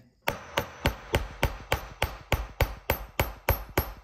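A small steel hammer tapping rapidly and evenly on the latch pin of an engine-hoist clevis hook held in a vise, about three strikes a second. It is peening the soft pin end over, mushrooming it, so the spring-loaded latch pin can't slip out.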